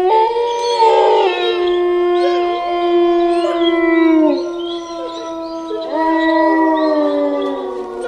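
Wolves howling: a long held howl that slides down in pitch about four seconds in, then a second howl rising in about six seconds in, with other howling voices overlapping.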